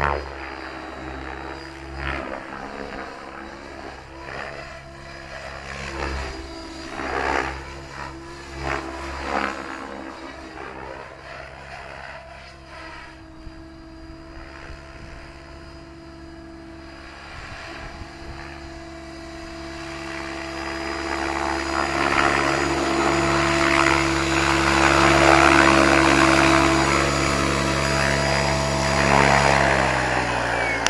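Electric RC 3D helicopter flying: a steady motor-and-rotor whine with several short whooshing surges from the blades in the first third, then growing louder through the last third as it comes in close.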